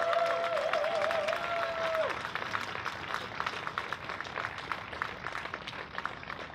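Audience applause: many hands clapping steadily, loudest at the start and easing off a little after about two seconds. Over the clapping in the first two seconds there are a few long held tones, one wavering, that then stop.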